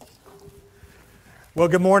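Quiet pause with a faint, steady held tone, then a man starts speaking about one and a half seconds in.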